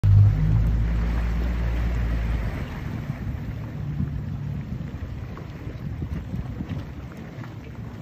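Low, steady hum of a boat's outboard motor at idle, strongest for the first couple of seconds and faintly again about halfway, under wind buffeting the microphone.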